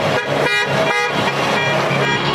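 Horns of a convoy of GAZelle vans sounding together in one long, steady blast, several tones at once.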